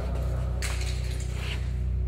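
A plastic glow stick tossed down a sewer tunnel lands with a brief clatter about half a second in, over a steady low hum.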